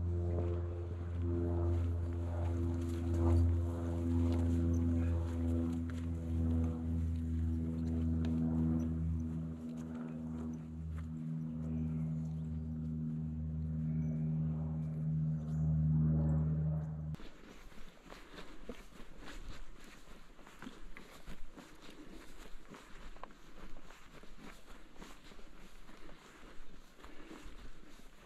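Background music of low, held droning chords that cuts off suddenly about 17 seconds in. After that come soft, irregular crackling steps and rustling on hill grass.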